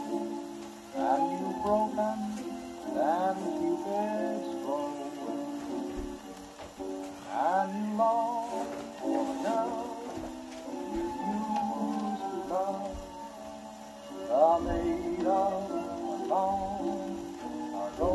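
Orthophonic Victrola acoustic phonograph playing a 1927 Victor 78 rpm shellac record: the instrumental passage before the vocal, a melody with vibrato and upward scoops over a steady accompaniment, under faint record hiss.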